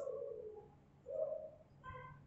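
A pigeon cooing faintly in the background. There is a low coo sliding slightly down in pitch at the start, then a shorter coo about a second in, and a brief higher note near the end.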